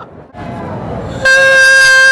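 A woman's long, loud, sustained yell starting about a second in, held on one high pitch, after a brief stretch of rushing noise.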